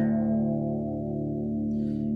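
Electric guitar E5 power chord, tuned down a whole step, ringing out through a chorus pedal and slowly fading.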